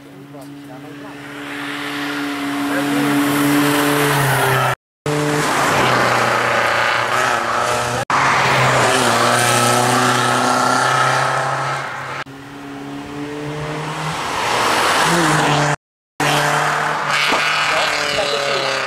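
BMW E46 rally car's engine at high revs on a tarmac sprint stage, in several short clips joined by abrupt cuts. Each clip grows louder as the car approaches.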